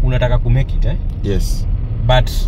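Steady low rumble of a Porsche Cayenne moving, heard from inside the cabin, under a few short spoken syllables.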